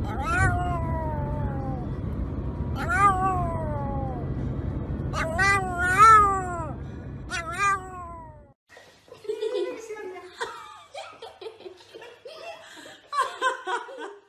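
Pomeranian howling in a car: four long howls, each sliding down in pitch, over the steady low rumble of the car on the road. The howling and rumble stop suddenly a little past halfway, and quieter voice-like sounds and light clicks follow.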